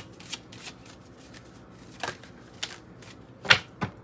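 Angel-number oracle cards being shuffled and dealt onto a wooden table: scattered soft flicks and riffles, with two sharper slaps near the end as cards land.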